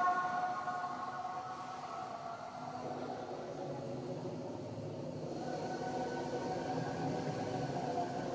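A pause in a high-pitched adhan: the last sung phrase dies away in the mosque's reverberation over the first couple of seconds, leaving faint, wavering drawn-out tones.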